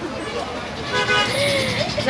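A vehicle horn sounding once, a steady tone held for about a second, starting about a second in.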